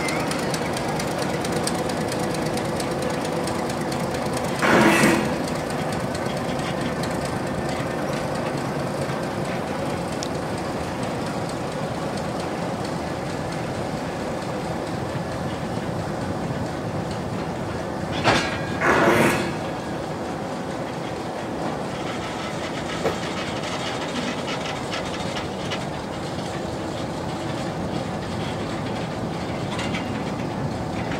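Small mine locomotive running along the track: a steady engine and wheel noise, with a short loud clank about five seconds in and two more a little past halfway.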